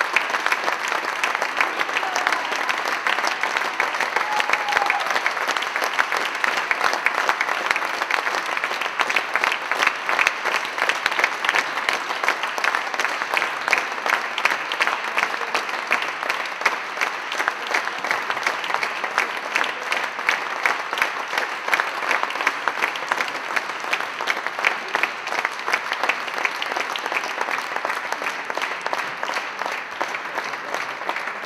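Audience applauding steadily, a dense, even clatter of many hands clapping.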